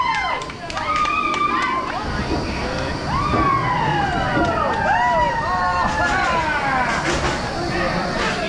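Several roller coaster riders whooping and cheering at once, in overlapping calls that rise and fall in pitch, as the train rolls into the station. From about two seconds in, a low rumble of the train running on its track joins them.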